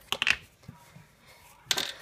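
Short clicks and rustles of hands handling a paper-covered cardboard tube and a small plastic bottle on a wooden table: a quick clatter just after the start and another rustle near the end.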